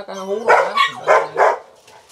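A dog barking four times in quick succession, about a third of a second apart, stopping about halfway through.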